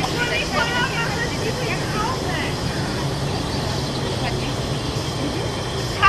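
Faint voices of people talking, mostly in the first couple of seconds, over a steady low hum.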